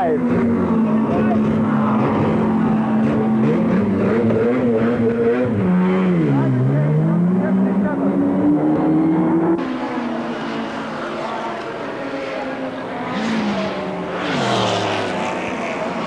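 Racing saloon car's engine kept running at steady revs in the pit lane during a driver change, then dipping and climbing in pitch as it is revved and pulls away. Later a race car passes at speed.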